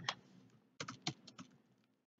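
Faint typing on a computer keyboard: a quick run of keystrokes, clustered between about a second in and a second and a half.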